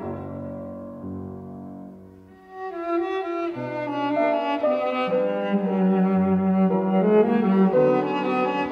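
Cello with piano accompaniment playing a slow classical piece. The music dies down to a soft pause about two seconds in, then comes back fuller, the cello holding a long low note in the second half.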